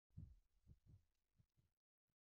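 Near silence: a handful of very faint, low thumps that die away within about two seconds.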